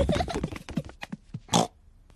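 Cartoon pig snorts: a few short snorts, the loudest about one and a half seconds in.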